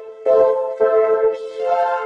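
Novation MiniNova synthesizer's vocoder played polyphonically: a voice turned into synth chords on a vocoder pad patch, in short phrases whose notes change about every half second.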